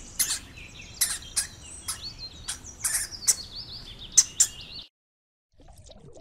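Hamster running in a plastic exercise wheel: repeated sharp clicks of the wheel with high-pitched squeaks. The sound cuts off suddenly about five seconds in.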